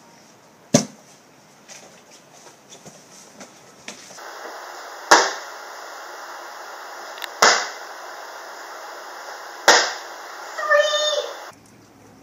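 Plastic water bottle landing hard on a concrete garage floor after being flipped, three sharp thuds about two seconds apart, each with a short echoing tail. An earlier single sharp knock comes about a second in, and a brief shout follows the last landing.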